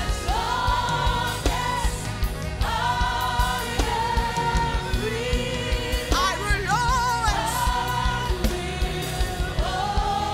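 Live gospel worship song: female singers and choir singing long held notes with vibrato over a band with a steady beat.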